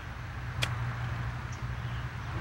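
A golf club striking the ball on a short chip shot from the rough: a single crisp click a little over half a second in.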